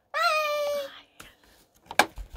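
A young girl's voice: one high-pitched, drawn-out call of under a second, then a sharp click near the end.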